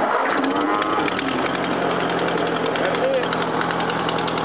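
1941 Ford tractor's four-cylinder flathead engine starting on the push-button starter, catching and settling into a steady idle about a second in.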